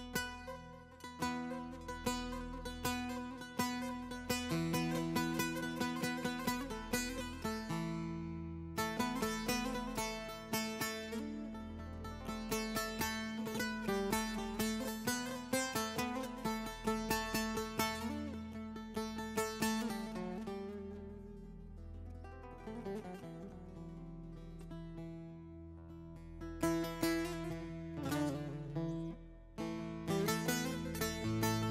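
Bağlama (long-necked Turkish saz) playing an instrumental passage of a Turkish folk song with rapid plectrum strokes over held low notes. The playing breaks off briefly about eight seconds in, grows quieter past the two-thirds mark, then swells again near the end.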